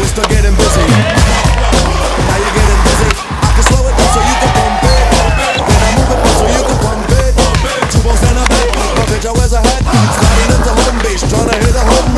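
Hip-hop music with a steady beat, over skateboard sounds: wheels rolling on paving stones and repeated sharp clacks of the board on tricks.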